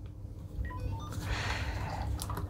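Motorola CLP107 two-way radio powering on: a short run of faint, quick beeps at changing pitches about half a second in, heard through its earpiece, followed by rustling handling noise as the radio is handled.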